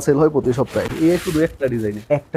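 A man speaking, with a rustle of handled fabric for about a second near the middle.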